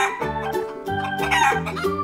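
Chicken sound effect: a chicken calling, heard over steady organ background music.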